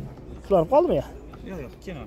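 Brief speech from a nearby voice, a few syllables, over a low steady background hum.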